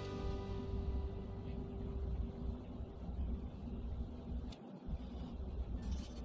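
Background music with long held notes over a steady low bass.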